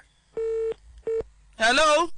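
Two telephone-line beeps at one steady pitch, a longer one and then a short one, followed near the end by a brief, louder burst of voice.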